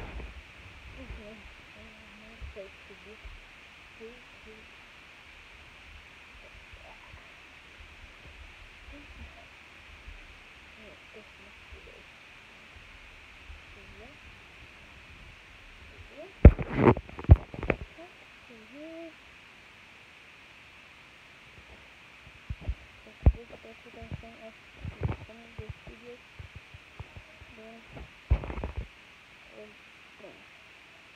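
Muffled handling noise from a covered phone: bumps and rustles in two clusters, one a little past the middle and another near the end, over faint voices too indistinct to make out.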